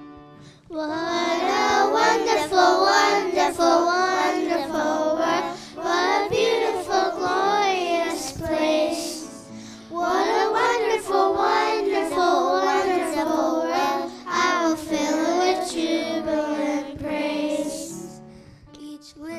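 A children's choir of young girls singing a song together into handheld microphones. The singing begins about a second in and carries on through a brief pause about halfway, ending just before the end.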